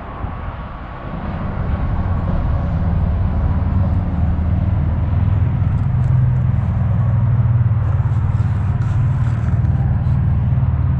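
Freeway traffic running close by: a loud, steady low rumble with a low drone that builds over the first couple of seconds and then holds.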